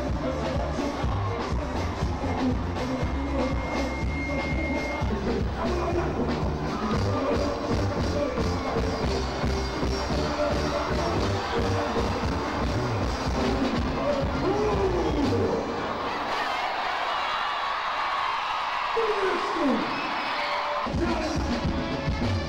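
Live band music through a concert PA with a lead vocalist and a crowd cheering. A little after two-thirds of the way through, the bass drops out for about five seconds, leaving voices and crowd noise with a few downward vocal slides. The bass then comes back just before the end.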